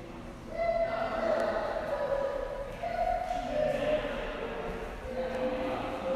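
Choral singing with voices holding long notes, each about a second before moving to another pitch, starting about half a second in.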